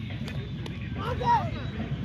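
Open-air ambience with a steady low rumble. About a second in, a faint, distant voice calls out briefly from the field.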